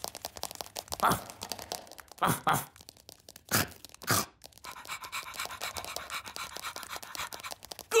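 Cartoon sound effects for a dog-like ladybird fetching slippers: a few short separate noises in the first half, then a fast, even pattering of scuttling steps from about halfway to the end.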